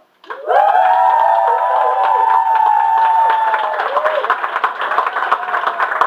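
Small audience suddenly breaks into long whoops and cheers over clapping. The whoops die away about four seconds in, leaving steady applause.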